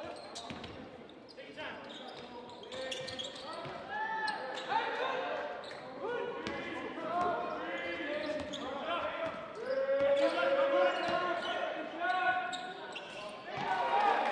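Sounds of a basketball game on a hardwood court in a large hall: the ball being dribbled and bounced, players' shoes squeaking, and players and spectators calling out. Near the end the crowd starts to cheer and applaud.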